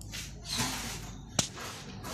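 Building materials being handled by hand: a scraping, shuffling noise, then one sharp knock about a second and a half in.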